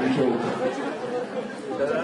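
Speech: a person talking in a lecture.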